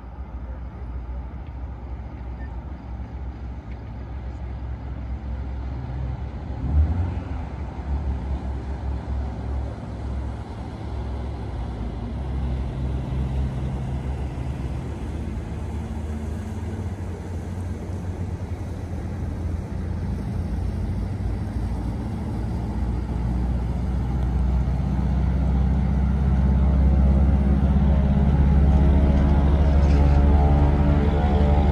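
Floatplane's propeller engine on the water, a low rumble that grows steadily louder, its pitched drone coming through clearly over the last few seconds as it powers up. A brief thump about seven seconds in.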